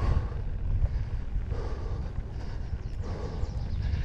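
Mountain bike descending a dirt singletrack at speed: wind buffeting the camera microphone over the rolling noise of knobby tyres on dirt, with light clicks and rattles from the bike.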